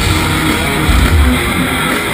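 Thrash metal band playing live at full volume: distorted electric guitars over heavy drums, a dense, unbroken wall of sound.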